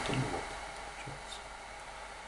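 Pause between spoken sentences: the last of a word fades out at the start, then only faint steady room tone, a soft hiss with a low hum.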